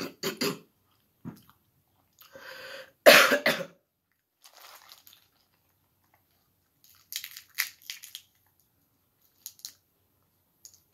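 A loud cough about three seconds in, then snow crab shell cracking and snapping between the hands in a quick cluster of sharp clicks near the end.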